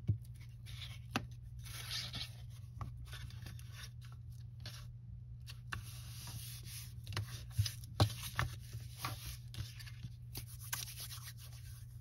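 A glue stick rubbed along the edges of a paper pocket, followed by the folded paper pressed and smoothed flat by hand. Irregular short rubbing strokes, rustles and small taps.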